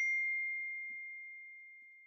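A single bell-like ding: one clear, high tone struck just before and ringing out, fading steadily away over about two seconds.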